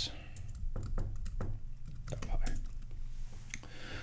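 Typing on a computer keyboard: keys clicking at an irregular pace as a file name is typed.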